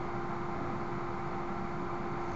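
Steady background hiss with a constant low hum, with no other event: the recording's own noise floor.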